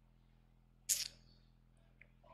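Quiet pause with a faint steady electrical hum on the sound system; about a second in, one short sharp hiss picked up by the handheld microphone, lasting about a fifth of a second.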